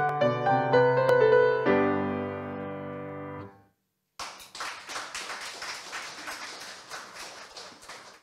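Kawai grand piano playing the closing bars of a song accompaniment, ending on a held chord that stops about three and a half seconds in. After a short silence, audience applause starts suddenly and fades away.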